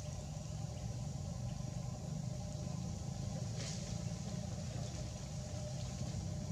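A steady low rumble, like an engine running at a distance, with a faint high hiss over it.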